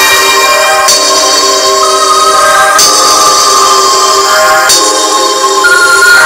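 Music played loud through a Kicker CSC65 6.5-inch coaxial car speaker held in free air on amplifier power: electronic music with bell-like synth notes and very little bass. The melody changes about every two seconds.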